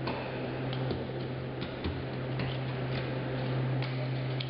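Oysters being shucked by hand: sharp, irregular clicks and taps of an oyster knife and shells, over a steady low hum.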